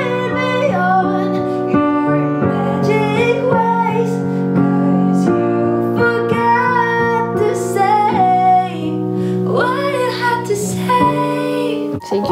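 A high voice sings a new song melody over held keyboard chords and a steady beat.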